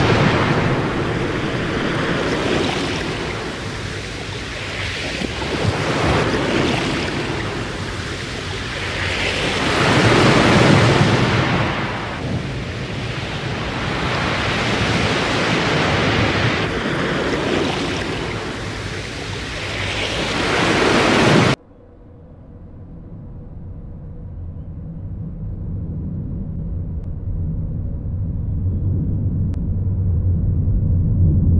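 Loud rushing storm noise, surging and ebbing every few seconds. It cuts off abruptly about 21 seconds in, leaving a low rumble that grows steadily louder.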